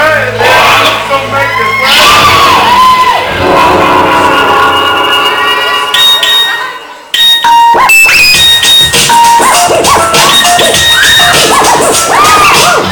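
Loud dance music playing over the hall's sound system, with an audience of kids cheering, whooping and shouting over it. The sound dips briefly about seven seconds in, then comes back suddenly at full level.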